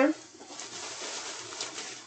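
A brief voiced sound right at the start, then about a second and a half of crinkly rustling as a plastic-bagged loaf of bread is handled.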